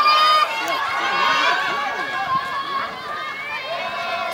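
Several spectators' voices shouting encouragement to runners, overlapping one another, loudest in the first half second.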